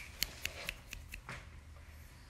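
A quick run of sharp, light clicks from a person's fingers, about four a second, trailing off after a second and a half, made to catch a kitten's attention.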